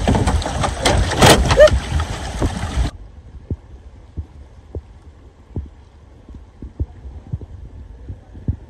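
Wind rumbling on the microphone for about three seconds, then an abrupt cut to a much quieter track of soft, irregular knocks and thumps.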